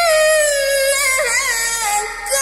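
A teenage boy's voice in melodic tilawah-style Quran recitation, holding one long drawn-out note that slides slowly downward, with a quick wavering ornament about halfway through before settling lower.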